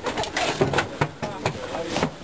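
Indistinct voices of several people talking, broken by a few sharp knocks and clicks.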